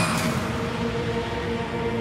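Horror film trailer score: steady held tones over a wash of noise that slowly fades.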